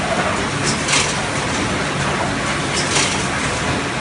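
Industrial production machine running steadily, with a short sharp double stroke repeating about every two seconds over a steady mechanical hum.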